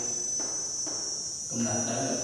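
A steady, high-pitched insect chorus, an unbroken shrill drone with no pause.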